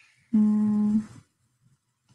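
A woman's short hum, a closed-mouth "mm" held on one steady pitch for under a second.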